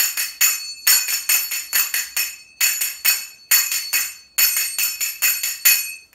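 A pair of finger cymbals (zills, sagats) struck in the 3-3-7 pattern: two quick groups of three strikes, then a run of seven, each strike ringing bright and metallic.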